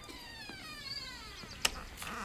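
A single high-pitched cry, like a meow, sliding steadily down in pitch for about a second, followed by a sharp click.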